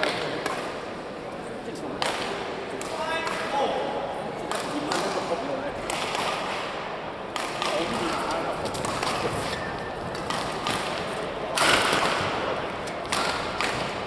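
Badminton rally: rackets striking the shuttlecock again and again, with sharp hits and the thud of players' footwork on the court, and voices in the background.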